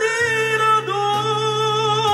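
A male voice singing long held high notes into a microphone over an instrumental backing track; the sung pitch shifts slightly about a second in.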